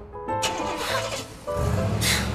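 Background drama score music; about one and a half seconds in, a car engine starts up and runs with a low, steady rumble.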